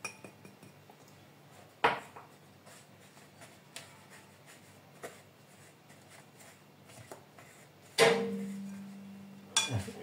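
A spoon knocking and tapping against a white bowl while powdered sugar is spooned in and worked: a sharp knock about two seconds in, a few light clicks, then a loud knock near the end that leaves the bowl ringing briefly.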